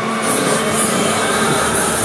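Fairground ride in full motion: a loud, steady mechanical rumble of the spinning cars and their drive.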